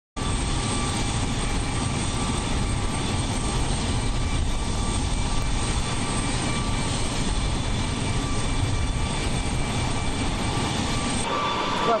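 Jet aircraft engine running: a steady rushing noise with faint, steady high whining tones, which gives way to a voice about a second before the end.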